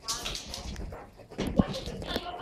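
A dog whining briefly near the start, high-pitched. About one and a half seconds in there are a couple of thumps.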